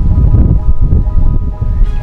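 Wind buffeting an outdoor microphone: a heavy, irregular low rumble. Faint steady music notes linger underneath.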